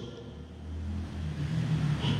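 A faint low rumble in a pause between speech, swelling a little louder over the two seconds.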